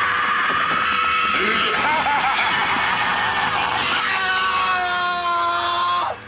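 A young man screaming in film clips: long, high, held screams one after another, with a new scream starting about four seconds in that slides slightly down in pitch.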